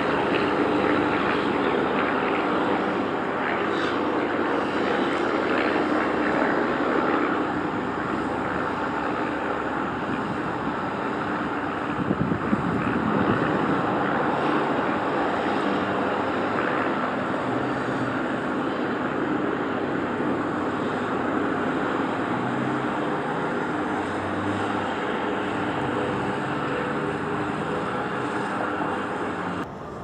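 The 1960 MGA 1600 Roadster's four-cylinder engine and exhaust giving a steady drone as the car drives around at low speed.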